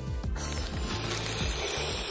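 Inflating sound effect: a steady rushing hiss of air starting about half a second in, over low background music.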